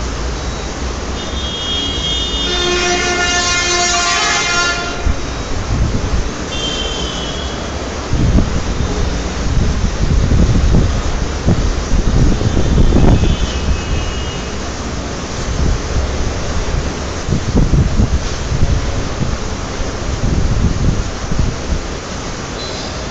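A vehicle horn sounds for about four seconds, then gives two shorter toots, over a heavy, uneven low rumble that grows louder about eight seconds in.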